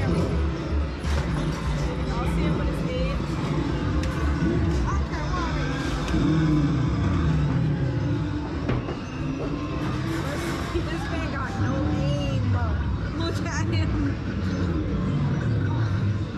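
Busy arcade din: game music and electronic effects mixed with voices, over the engine noise of a motorcycle racing arcade game.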